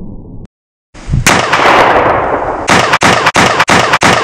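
Loud gunfire: a muffled low rumble cuts off about half a second in. A sharp shot follows just after a second, with a long echoing decay. Near the end comes a fast string of sharp bangs, about three a second.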